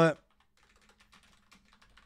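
Typing on a computer keyboard: a fast, faint run of key clicks as a chat message is typed out.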